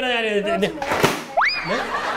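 A voice drawing out a word, a sharp click about a second in, then a quick upward-sliding whistle that levels off high: a cartoon-style comic sound effect.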